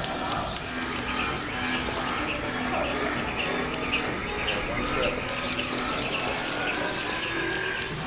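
Background music playing in a gym, with the quick light ticking of speed ropes slapping the floor as two people skip double-unders.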